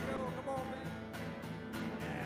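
Live worship band playing: strummed guitars and a steady percussion beat under a man singing the melody of a worship song.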